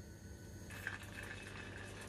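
Melted butter bubbling faintly in a saucepan on a low gas flame. The background changes abruptly under a second in.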